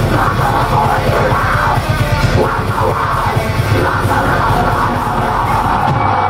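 Live heavy metal band playing loud, with distorted guitars, bass and fast, dense drumming under harsh yelled vocals.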